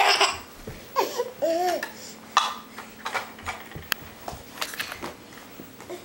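Toddler belly laughing in repeated bursts, with a high squealing laugh that rises and falls about a second in.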